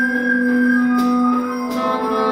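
Live improvised band music: a long low note held steady under thinner sustained higher tones, with a few light percussion taps, and new notes starting to move near the end.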